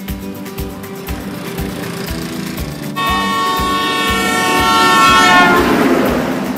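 Background music with a steady beat; about halfway through, a loud, sustained horn blast with several tones at once starts, sinking slightly in pitch, and dissolves into a rushing noise near the end.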